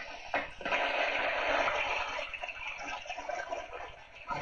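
Heavy rain on a film soundtrack, a steady rushing hiss heard through a television speaker. It starts about half a second in.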